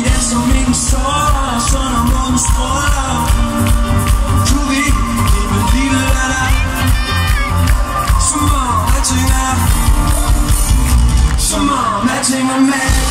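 Live pop music from a big festival sound system, recorded from the crowd: a heavy bass beat with synth and vocals over it.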